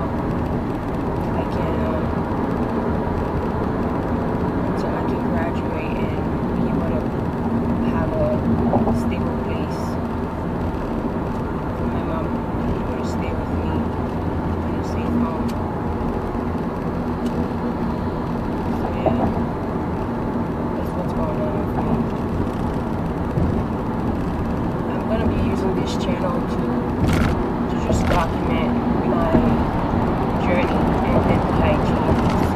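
Steady road and engine noise inside a moving car's cabin, a continuous low rumble.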